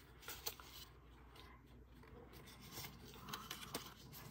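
Faint rubbing and a few soft ticks of a cardstock card being handled as its fold-out panel is opened and closed.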